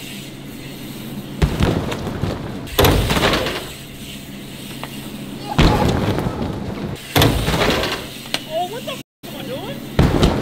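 A BMX bike and rider landing on an inflated airbag, heard as several heavy, noisy thumps over a steady low hum. The sound drops out for a moment near the end.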